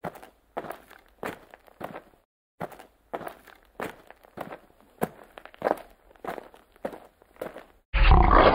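Footsteps walking at an even pace, about one and a half steps a second, with a short break after about two seconds.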